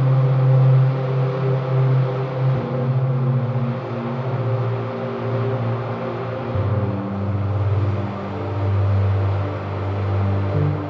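Mellow synthwave instrumental music: long held low synth bass notes under soft sustained pads, the bass moving to a lower note about two-thirds of the way through.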